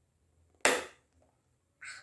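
A single sharp snap as a clear plastic case of makeup sponges is popped open, dying away quickly. A shorter, softer rustle follows near the end.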